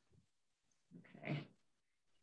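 Near silence broken about a second in by one brief, faint vocal sound, half a second long.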